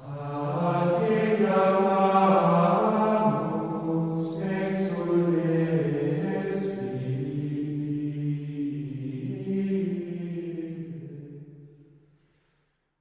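Men's voices singing plainchant in unison: slow, held melodic lines that fade out near the end.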